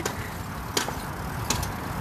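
Pedal cart rolling along a paved path with a steady low rumble, and three sharp clicks about three-quarters of a second apart, a noise the riders don't recognise.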